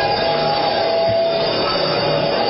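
Background worship music of sustained keyboard chords, with one higher note held for about a second.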